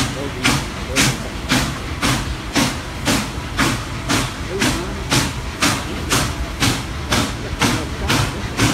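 Norfolk & Western 611, a 4-8-4 steam locomotive, working steadily: its exhaust beats come sharp and even at about two a second, with no slipping.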